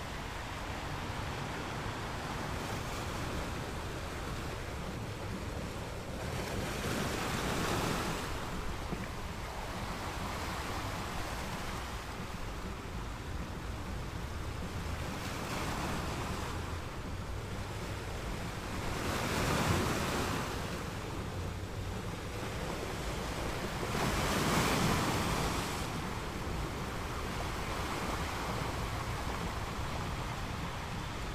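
Heavy ocean surf breaking on a beach: a steady rush of white water that swells into a louder surge as each big wave breaks, about every five to six seconds, loudest about twenty and twenty-five seconds in. Wind buffets the microphone throughout.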